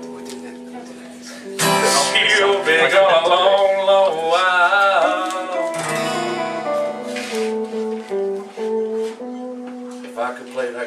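Live acoustic and electric guitar duo playing. About a second and a half in, a loud strummed chord comes in under a sung voice holding wavering notes with vibrato, followed by a picked guitar line of stepping single notes.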